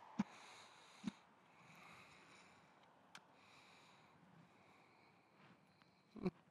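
Near silence with a faint hiss, broken by two brief soft knocks in the first second or so and a tiny tick a little later.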